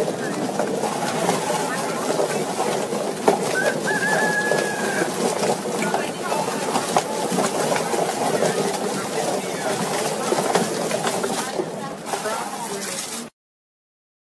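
Rotary drum poultry plucker running, its rubber fingers slapping and scrubbing a scalded chicken in a dense, clattering churn. Bird-like calls and voices sound along with it. The sound cuts off abruptly near the end.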